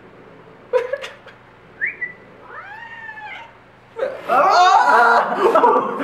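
Calico house cat crying: short calls about a second and two seconds in, a rising-and-falling meow around the middle, then a loud, drawn-out yowl over the last two seconds.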